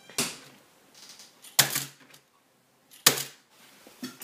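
Tamiya Mini 4WD car with MA chassis and body damper system dropped onto a workbench cutting mat three times, each landing a sharp plastic clatter about one and a half seconds apart, the last two loudest. These are landing tests of the body dampers.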